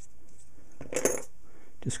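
A brief metallic clink about a second in, as small drilled aluminium parts are handled and knocked together, with a faint high ring after it.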